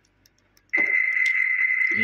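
A car's electronic warning buzzer starts abruptly about two-thirds of a second in and holds one steady, high-pitched beep tone.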